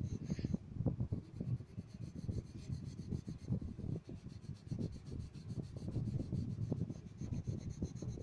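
Colored pencil shading on paper: rapid, uneven back-and-forth strokes rubbing the lead across the sheet.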